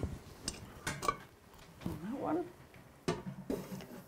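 Stainless steel stockpots being set down onto electric hot plates: a few separate metal clinks and knocks, with a cluster about three seconds in.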